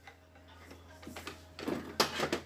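Light clicks and rustles of small parts and tools being handled on a workbench. They come in irregular short bursts that grow louder near the end.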